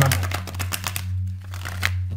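A deck of tarot cards being shuffled by hand: a quick run of card flicks and rustle that thins out after about a second, over a steady low hum.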